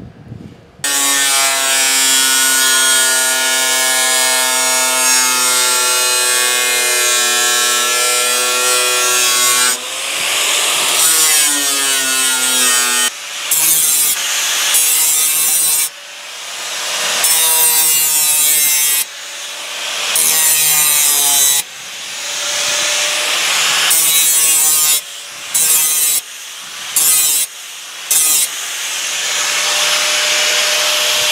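Angle grinder with a thin cut-off wheel cutting strips from 16-gauge sheet steel. A steady high whine runs for about nine seconds, then comes a series of shorter cuts, the motor dropping off and winding back up about ten times.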